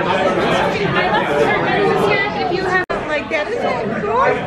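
Several people chatting over one another in a restaurant dining room, with a brief sharp break in the sound about three seconds in.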